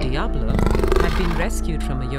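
A black leopard snarling: one rough, pulsing growl lasting about a second, over background music.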